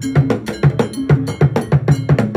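Traditional Ghanaian drum ensemble playing a steady, even rhythm on tall carved barrel drums, with a heavy low stroke about every half second and lighter strokes between.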